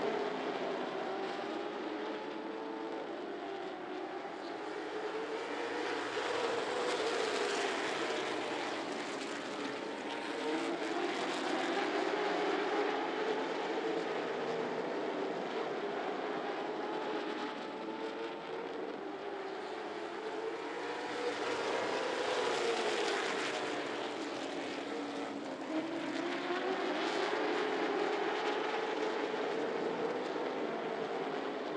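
A pack of late model stock car V8 engines running at racing speed, their pitch rising and falling in long sweeps again and again as the cars circle the track.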